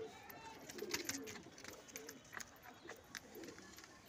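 Domestic pigeons cooing faintly, with a few light clicks and taps.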